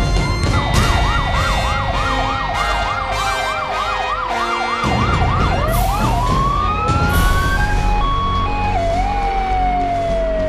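Fire engine siren, first in a fast yelp of about four rises and falls a second for about five seconds, then switching to a rising wail that later winds slowly down. A low rumble from the passing trucks' engines runs underneath.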